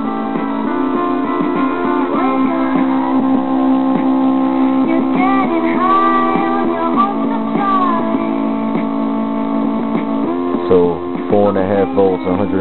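Guitar music from an MP3 player playing through a homemade transistor audio amplifier and a 6-ohm speaker, turned up to halfway volume, with held notes and bends.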